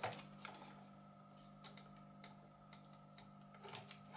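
Faint, sparse light clicks and taps of hands handling the plastic and metal parts inside an opened Weller soldering station's housing, over a steady low electrical hum.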